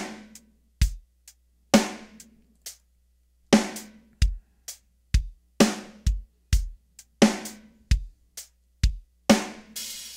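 MT Power DrumKit 2 virtual drum kit playing slow eighth-note closed hi-hat grooves at 65 BPM: kick, snare and hi-hat in a steady beat, with a brief pause about three seconds in.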